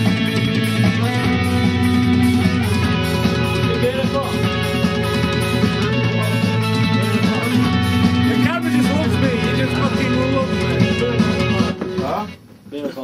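Loud recorded rock music led by guitar with a fuzzy, distorted tone, which the band then asks may be too fuzzy. It stops abruptly at the end.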